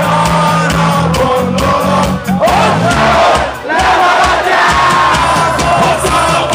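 A live rock band playing, with a crowd of fans singing and shouting along loudly over it, heard from among the audience.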